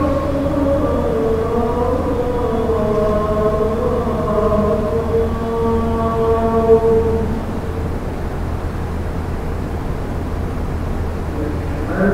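Voices chanting in long, slow, drawn-out held notes, fading to a softer line about seven seconds in, over a steady low hum.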